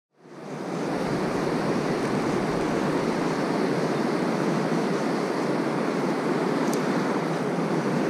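Steady rush of river water pouring over a low weir, fading in during the first second.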